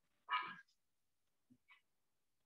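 One short, faint dog bark about a third of a second in.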